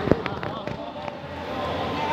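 A loud sharp slap right at the start, followed by a few lighter knocks over the next half second, against the voices of a group of people.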